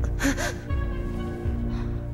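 A woman's short, sharp gasp as she wakes, in the first half-second, over background music with steady sustained tones and a slow, low pulsing beat.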